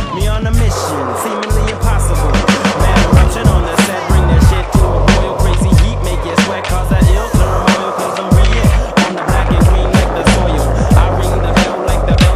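A hip-hop backing track with a steady beat. Under it, skateboard wheels roll on smooth concrete and the board clacks as it pops and lands on tricks.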